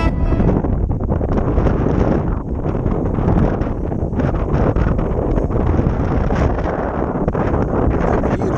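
Wind buffeting the microphone: a loud, uneven rumbling noise.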